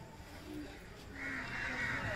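A faint animal call beginning about a second in and lasting about a second and a half, over a quiet outdoor background.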